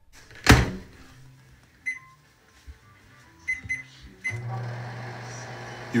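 Microwave oven being started: a loud thump, several short keypad beeps, then the oven running with a steady low hum from about four seconds in.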